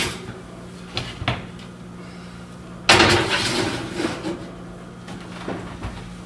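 An oven door on an electric range is swung shut with a single loud bang about three seconds in, its clatter dying away over about a second. A couple of light knocks come before it, and a steady low hum runs underneath.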